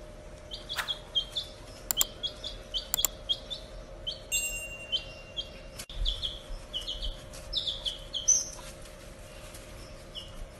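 Baby chick peeping over and over, short high notes that fall in pitch, about three a second, stopping near the end. A few sharp clicks sound in the first three seconds.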